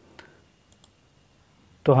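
Computer mouse clicking: one sharp click followed by two fainter ticks, with speech starting near the end.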